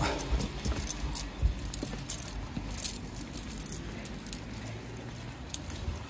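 Footsteps and handling noise of someone walking, with irregular light clicks and small rattles throughout.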